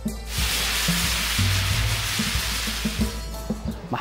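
Music with low bass notes under a long, loud hiss like a whoosh transition effect. The hiss fades out about three seconds in.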